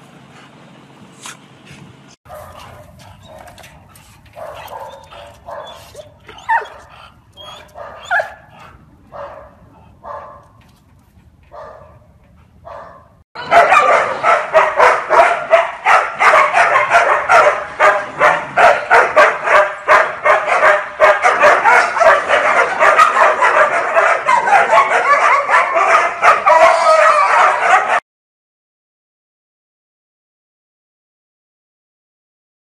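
Dogs barking and yipping: first a run of separate short barks and yips about a second apart, then many dogs barking at once in a loud, dense chorus that cuts off suddenly near the end.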